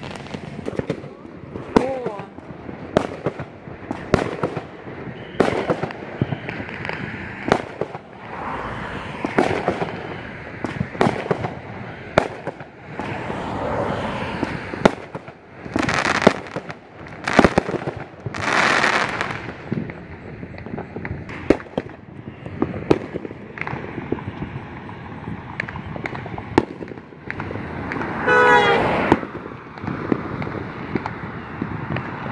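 Aerial fireworks going off: sharp bangs and pops roughly once a second, some followed by crackling, with the loudest bursts a little past halfway.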